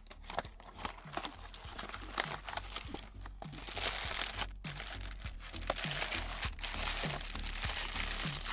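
Cardboard box flaps opened and a plastic-wrapped roll of hook-and-loop tape pulled out, the plastic wrap crinkling. Scattered clicks and rustles at first, then denser, louder crinkling from about halfway.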